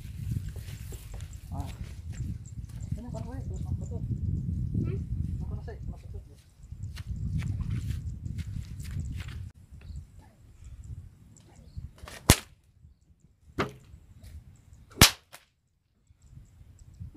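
Homemade whip cracking: two loud, sharp cracks about three seconds apart in the second half, with a softer snap between them. A low rumble fills the first half.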